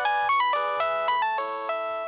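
Mobile phone ringtone playing a fast melody of clear, steady notes, several sounding together and changing every fraction of a second.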